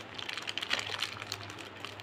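Faint crinkling and rustling of a plastic packet being handled, with scattered small clicks over a low steady hum.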